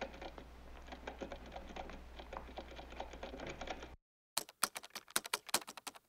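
Rapid keystrokes of typing over a low steady hum. About four seconds in the sound cuts out, and after a brief gap sharper, louder key clicks resume in quick irregular runs.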